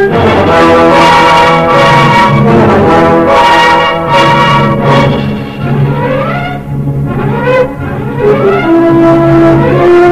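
Loud orchestral horror film score led by brass, holding sustained chords; a little past the middle, several rising glides sweep upward as the sound thins.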